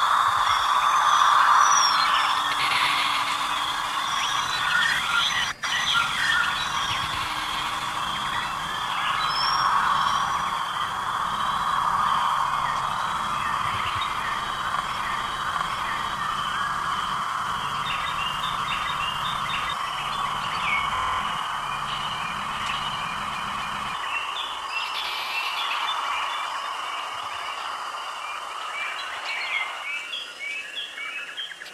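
Ambient electronic soundscape: a sustained noisy drone with bird-like chirps and tweets scattered over it. A brief dropout comes about five and a half seconds in, and a low rumble underneath stops about 24 seconds in.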